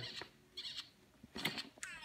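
Faint, short breathy sounds from a baby at close range, a few soft puffs and snuffles with quiet between them.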